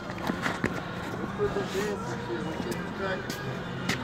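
Faint, indistinct voices of onlookers murmuring in the background, with a few scattered light taps.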